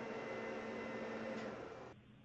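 Faint steady hiss with a low hum and no speech; the hum stops about one and a half seconds in and the hiss drops lower near the end.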